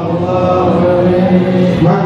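A man chanting an Islamic prayer into a microphone, a single voice in long held melodic notes that slide between pitches.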